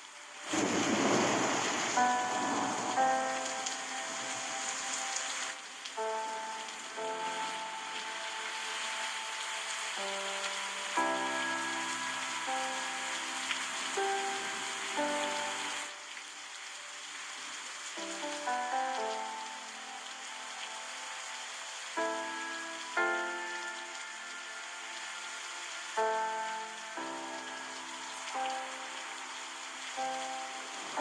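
Steady rush of flowing water, like a river or waterfall, under a slow, soft melody of held keyboard notes that change every second or two. The sound swells up within the first second.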